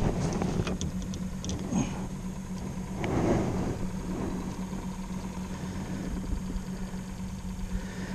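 Steady low motor hum from the jon boat, with light clicks and a brief rustle about three seconds in from handling a freshly caught crappie and its jig.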